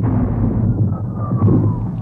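Artillery bombardment sound effects: a continuous rumble of shellfire, with a falling whistle like an incoming shell starting a little under a second in and lasting about a second.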